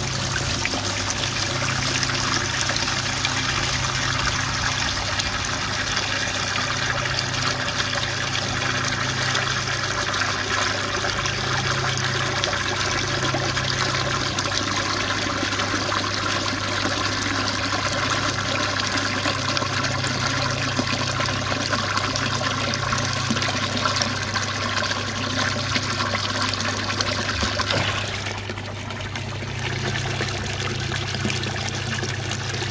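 Murky waste water from a koi pond filter gushing out of a pipe into a plastic tub, splashing and churning as the tub fills. The splashing drops in level briefly near the end.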